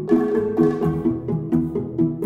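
Background music: short plucked notes stepping up and down over a steady, bouncy beat.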